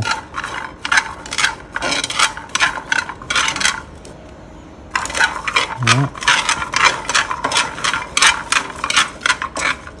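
Dried cacao beans rattling and clicking against a nonstick frying pan as they are stirred with chopsticks during dry roasting. The clicking stops for about a second a little before the middle, then carries on.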